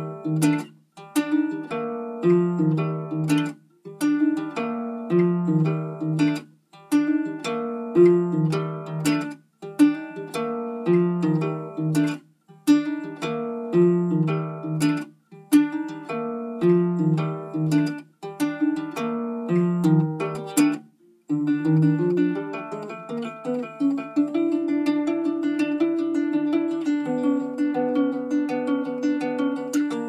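Baritone ukulele playing a repeating phrase of plucked chords, each phrase about three seconds long and broken off by a short stop. About two-thirds of the way through, the pattern changes to continuous strumming with no breaks.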